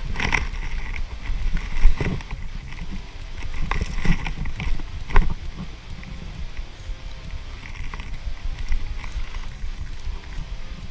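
Rumbling handling and movement noise from a body-worn camera as its wearer moves about holding a Nerf blaster, with a few sharp clicks and knocks, the loudest about two seconds in.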